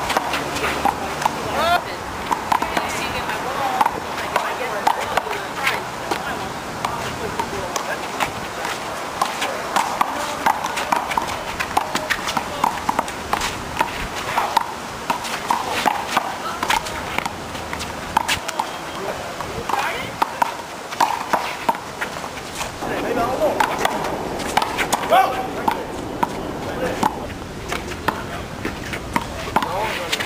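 A rubber handball smacked by open hands and off a concrete wall and court during a fast one-wall rally: repeated sharp slaps and knocks at uneven intervals, with players' voices and shouts alongside.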